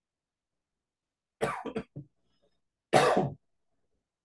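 A man coughing: a short broken bout about a second and a half in, then one louder cough about three seconds in.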